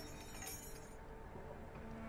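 Faint metallic clinking and ringing in a lull between bursts of heavy machine-gun fire. The ringing fades over the first second.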